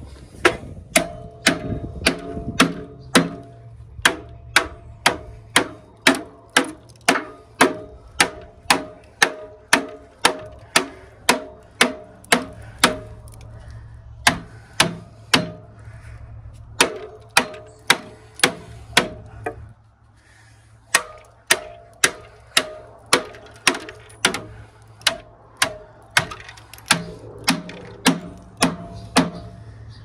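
Hammer blows on the copper windings inside a large generator stator, about two a second, each with a metallic ring. The hammering pauses briefly a few times, longest about two-thirds of the way through.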